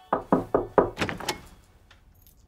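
Knocking on a wooden door: a quick run of about half a dozen knocks over a second and a half, fading away.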